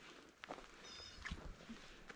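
Faint footsteps crunching on dry grass, twigs and dirt while walking uphill, with a brief high chirp a little under a second in.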